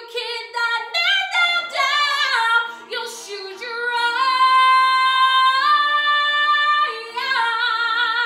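A woman singing a musical-theatre song solo in a belting voice. Short, quickly changing phrases come first, then a long held note from about four to seven seconds in, and a second held note with vibrato near the end.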